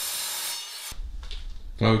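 Mitre saw blade cutting through steel box section, a steady high hiss that stops abruptly under a second in, leaving quieter workshop room tone.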